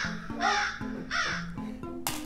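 Crow-caw comedy sound effect: two harsh, falling caws over light background music.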